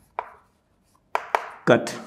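Chalk tapping and scraping on a chalkboard as a word is written: one sharp tap just after the start, then two more close together past the middle. A man says "cut" near the end.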